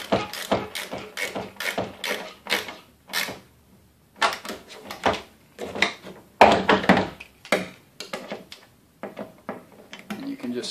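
Hand tools working a bolt through a plastic trash can lid: a Phillips screwdriver held in the pan bolt while a wrench tightens the locknut underneath. They give an irregular run of sharp clicks and knocks on the hollow plastic, loudest about six and a half seconds in.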